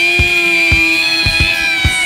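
Live rock band playing an instrumental jam passage: a long held lead note that bends slowly, over bass drum beats about twice a second.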